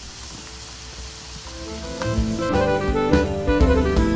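Faint sizzling of butter-topped scallops in their half shells, then background music with drums fading in about halfway through and growing louder.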